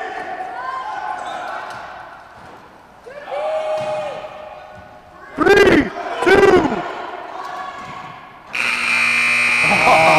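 Two loud shouts from players on a gym court about halfway through. Near the end the scoreboard buzzer sounds a steady electronic tone as the game clock runs out to zero, ending the period.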